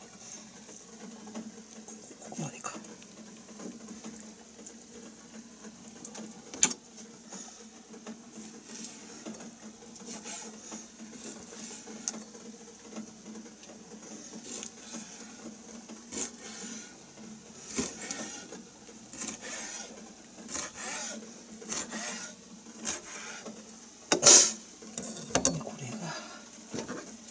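Kitchen knife and hands working skinned cutlassfish fillets on a plastic cutting board: scattered soft taps, scrapes and knocks of the blade on the board, with a sharp knock near the end.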